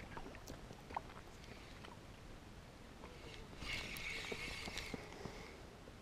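Spinning fishing reel wound for about two seconds, a soft whirring with a thin steady tone, preceded by a few light clicks and knocks.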